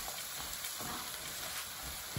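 Sliced onions and sweet peppers sizzling steadily in a frying pan as a wooden spoon stirs them.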